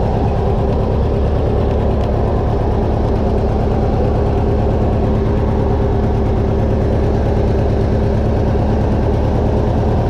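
The engine of a Craftsman riding lawn tractor running steadily, loud and close, with an even, fast beat and no change in speed.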